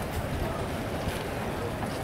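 Wind rumbling on the microphone over a steady murmur of indistinct background voices.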